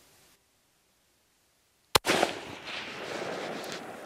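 A single hunting-rifle shot about halfway through, after near silence, followed by a long rolling echo that fades slowly.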